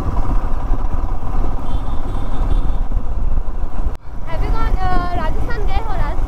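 Royal Enfield Himalayan's single-cylinder engine running while riding, a steady rumble mixed with wind noise on the microphone. The sound drops out briefly about two thirds of the way through, and a voice is then heard over the riding noise.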